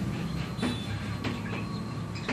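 Chalk writing on a blackboard: short taps and scratches as the letters are formed, a few strokes a second, over a low steady background hum.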